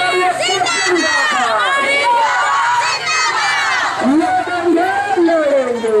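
A loud crowd of women shouting together, with many high voices overlapping.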